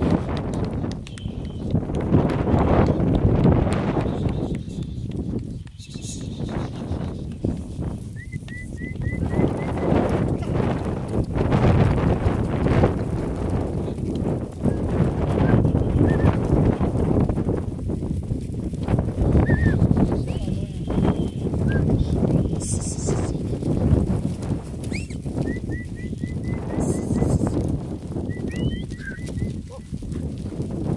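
A large herd of Somali goats moving past at close range: a dense, continuous shuffle and patter of many hooves on dry ground and bodies pushing through dry scrub.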